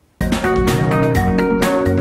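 Television segment intro music starting suddenly a moment in, with a steady quick beat and a strong bass line.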